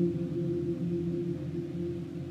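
Slow, drone-like electric guitar music: low notes held and overlapping in a steady hum, with no beat.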